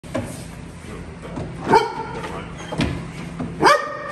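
Year-old Belgian Malinois police-dog prospect barking at a decoy in a bite suit, a few sharp barks with the loudest near the middle and just before the end.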